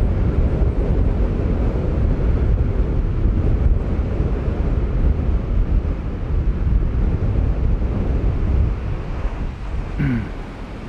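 Strong wind buffeting the microphone, a loud, steady low rumble that flutters with the gusts of a 25-knot wind.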